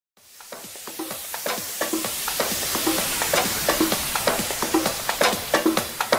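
Opening of an electronic trance track fading in over about the first second: a steady percussive beat of about two pulses a second under a hissing noise wash.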